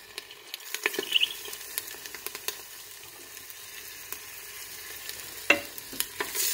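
Stuffed chicken thighs sizzling as they brown in a little oil in a pressure cooker pot: a steady hiss with many small crackles, thickest in the first couple of seconds. A single sharper click comes near the end.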